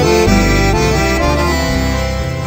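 Instrumental chamamé music led by an accordion, playing sustained notes over a low bass line.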